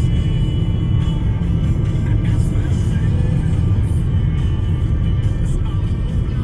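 Steady low road rumble of a car driving, heard from inside the cabin, with music playing over it.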